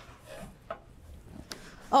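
Faint handling of a hot stainless-steel skillet on a gas stovetop grate: a soft rustle and two light knocks, a little under a second apart.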